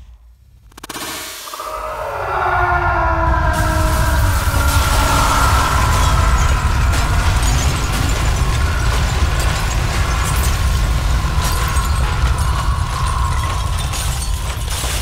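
An explosion sound effect for a bag of powder burst by a kick: falling swooping tones about a second in, then a long, loud, deep rumble with crackling all through it.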